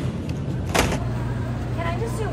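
A single short clatter, a plastic container knocking against a metal shopping cart, about a second in, over a steady low hum; a voice starts near the end.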